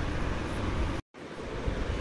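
Steady background hiss and rumble with no clear events, broken by a split-second dropout to silence about a second in.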